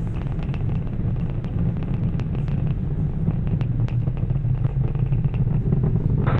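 SpaceX Falcon Heavy rocket's 27 Merlin engines heard from the ground during ascent: a deep, steady rumble with sharp crackling pops running through it, growing slightly louder toward the end.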